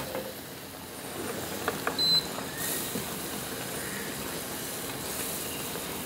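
Hot milk bubbling into roasted semolina and ghee in a frying pan, a low steady hiss as the semolina cooks. A few light clicks sound about one and a half to two seconds in.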